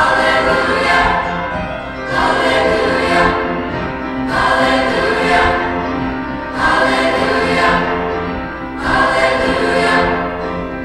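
Large mixed choir of girls' and boys' voices singing together, in phrases that swell anew about every two seconds over a held low note.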